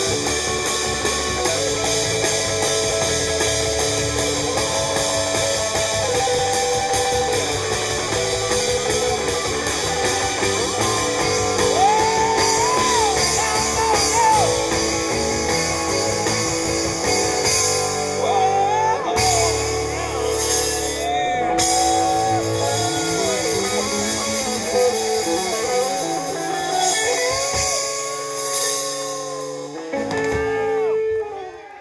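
Live rock trio playing: electric guitar, electric bass and drum kit, with bending lead lines over cymbal wash. Near the end the bass and drums drop out as the tune winds down.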